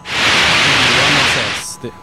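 A burst of radio static hiss lasting about a second and a half, the noise of the downlink receiver as the ISS transmission ends and the carrier drops.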